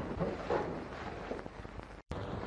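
Commotion of a room full of men getting up from their desks: shuffling feet, scraping furniture and handled papers, with faint murmuring, over the steady hiss of an old film soundtrack.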